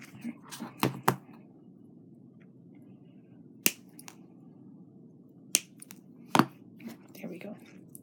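Small metal jewelry tools clicking on thin wire, about five crisp snaps spread out over the few seconds, as wire ends that came out too long are worked shorter.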